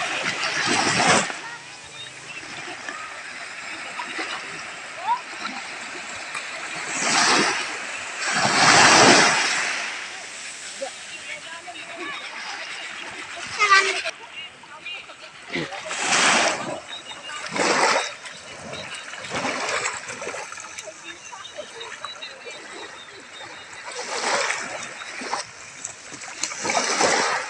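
Small sea waves breaking at the shoreline and washing up over sand, coming in irregular swells of rushing water every few seconds over a steady low surf hiss, the strongest about nine seconds in.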